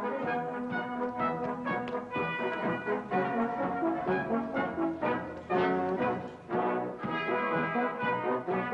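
Brass band music: several brass instruments playing a tune together.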